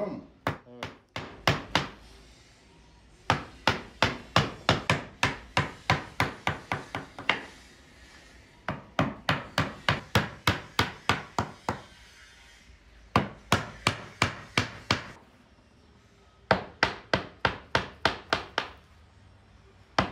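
A wooden mallet taps a carving chisel into a wooden panel in runs of quick, sharp strikes, about four a second, with short pauses between the runs.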